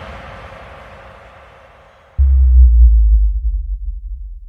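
The reverberant tail of a hardstyle track fading out after the music has cut. About two seconds in, a deep bass boom starts suddenly and slowly dies away.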